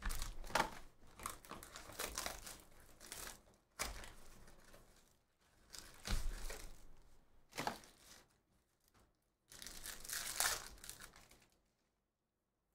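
Trading-card box packaging being torn and opened by hand: cardboard flaps and wrappers ripping and crinkling in several uneven bursts, stopping just before the end.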